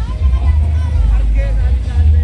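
Loud, very deep bass from a large carnival sound-system rig, coming in sustained notes that change every half second or so, with people's voices faintly over it.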